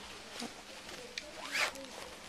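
Handling noise as the laptop is moved: faint clicks and one short rasping rub about one and a half seconds in.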